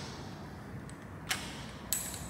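Two sharp metallic clicks in the second half, about half a second apart, from a long-handled wrench working a cylinder-head bolt on a Land Rover 200 TDI engine, over faint workshop room tone.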